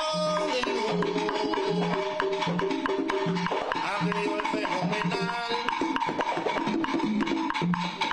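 Live Afro-Cuban song: a man sings lead into a microphone over hand percussion, with wooden claves clicking the rhythm and a low drum note repeating steadily underneath.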